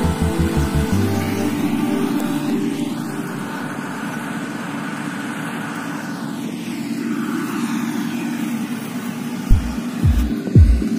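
Background music with a bass beat that stops about a second in, then the steady running of a combine harvester's engine. A few low thumps come near the end.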